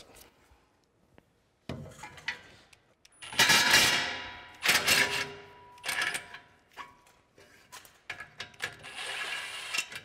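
Milwaukee M18 cordless impact wrench with a 13 mm socket hammering in short bursts on exhaust tip clamp bolts, loosening them. The loudest burst comes about three seconds in, another follows a second later, and a longer, weaker one runs near the end, with small metal clicks between.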